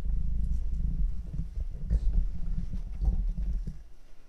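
Low rumbling and bumping of a handheld camera's microphone being handled as the camera is moved, cutting off shortly before the end.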